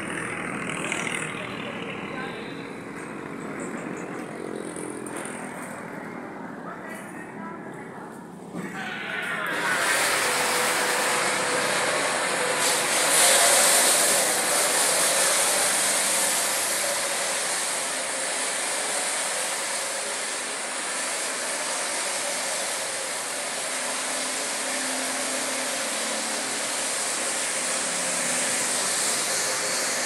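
A small motorcycle engine running at idle. About nine seconds in, a loud, steady hiss starts abruptly and continues, covering the engine.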